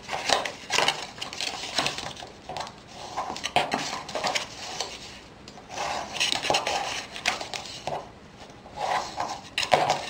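Paper envelope blank being creased: a hand-held scoring tool is run along the folds and the paper rubbed and folded against a cutting mat, giving a series of short scraping and rustling strokes.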